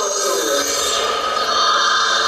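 Performance soundtrack played through loudspeakers: a drawn-out voice that falls in pitch at the start, over steady, held music tones.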